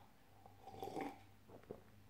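Faint sounds of a person sipping beer from a glass and swallowing, with a small click near the end.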